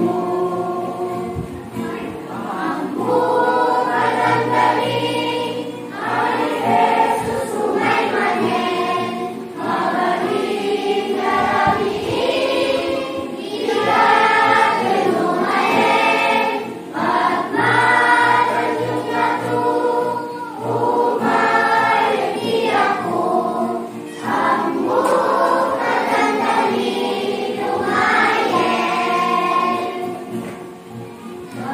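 Church choir of children and young people singing a sacred song together, in sustained phrases of a few seconds with brief breaks between them.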